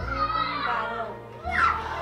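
Background music with steady held notes, with high voices talking over it, loudest about one and a half seconds in.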